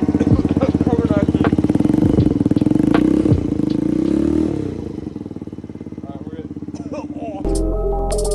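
Small 50cc 139QMB four-stroke single-cylinder scooter engine running at a fast idle through its exhaust, then settling to a lower, quieter idle about halfway through. Electronic music with a heavy beat cuts in near the end.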